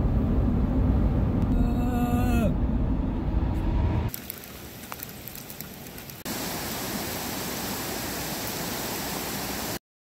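Car road noise heard from inside the cabin while driving on a wet highway, steady and low, with a brief pitched tone about two seconds in. It is followed by the steady hiss of rain falling on a flooded paved path.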